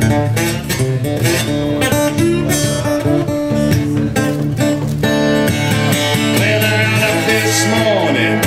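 Slide guitar playing a blues instrumental break: a driving strummed rhythm with notes sliding in pitch.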